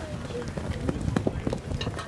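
Spectators' voices at a baseball game, with a string of sharp, irregular clicks through the second half.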